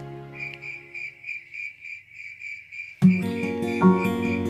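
A cricket-like insect chirping steadily at about four high chirps a second. Background music fades out at the start, and strummed acoustic guitar music comes in about three seconds in.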